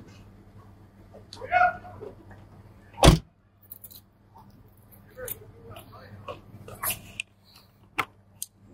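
A car door on a BMW E46 Touring wagon shut with a single loud thud about three seconds in, over a low steady hum. A brief higher-pitched sound comes about a second and a half in, and a few faint clicks follow the door.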